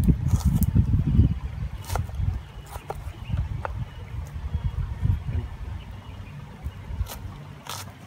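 Knife slicing a red onion on a plastic cutting board: a few sharp, irregularly spaced clicks as the blade meets the board. Under them runs a low rumble of wind on the microphone, heaviest in the first second or so.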